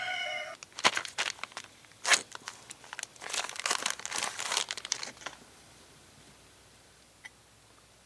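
A plastic parts bag being handled and torn open by hand: a run of crackling, crinkling rustles lasting about four seconds that stops about five seconds in.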